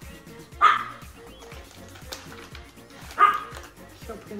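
A dog barks twice, short and sharp, about two and a half seconds apart, over steady background music with a beat.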